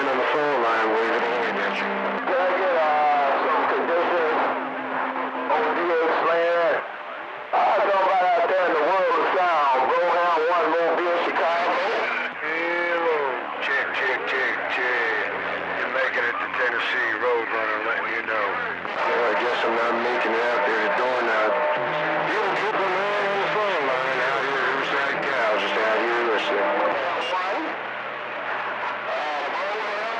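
Long-distance skip voices coming over a CB radio receiver on channel 28, hard to make out and overlaid with steady low tones. The signal drops out briefly about seven seconds in.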